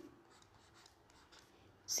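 Faint scratching and tapping of handwriting strokes on a touchscreen as letters are written, a series of light short scrapes.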